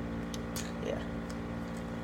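Steady low hum of a room humidifier running, with a short soft spoken "yeah" about a second in.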